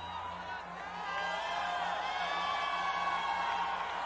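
A large crowd cheering and whooping, many voices overlapping, swelling louder about a second in.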